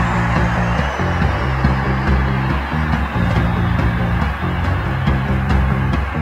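Music with a steady, pulsing bass line and no singing in this stretch.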